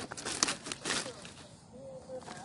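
Dry straw and stubble rustling and crackling as it is pushed through, with a woven plastic basket brushing against it; a cluster of crackles in the first second, then quieter.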